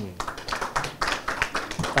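A small group of people clapping: an irregular patter of claps that starts suddenly and keeps going.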